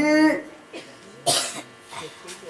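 A man's single short cough into a handheld microphone, about a second and a half in, just after he finishes a spoken word.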